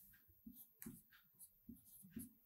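Marker writing on a whiteboard: a few faint, short strokes.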